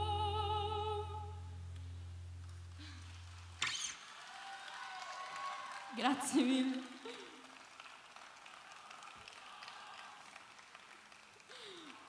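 A woman's voice holds the last note of the song with vibrato over a low sustained acoustic guitar note, both fading over the first two seconds. The guitar note is cut off with a click at about four seconds, followed by light applause and a few scattered spoken words.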